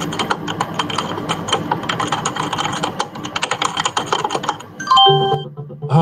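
Rapid computer-keyboard typing clicks over background music, ending with a short chime near the end.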